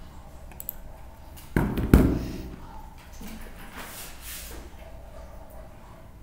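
Two heavy thumps in quick succession about a second and a half in, then a brief, fainter hiss a couple of seconds later.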